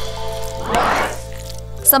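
A short, wet squelch about halfway through as a hand plunges into a big jar of thick chocolate spread, over background music.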